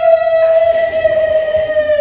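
A man's voice holding one long, high-pitched call at a steady pitch that begins to sag slightly near the end.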